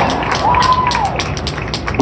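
Crowd clapping and cheering, with one voice whooping briefly about half a second in.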